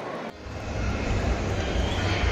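After a brief drop-out about a third of a second in, a steady low rumble sets in under the general background noise of a busy indoor mall.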